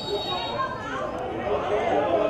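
Several people's voices talking and calling out at once, indistinct chatter.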